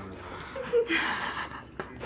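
A person's soft, breathy chuckle about a second in, with a faint short voice sound just before it, over a quiet background.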